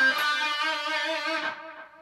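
An EVH Wolfgang electric guitar played through an EVH Lunchbox II amplifier, holding one note with a slight wavering vibrato. The note fades out after about a second and a half.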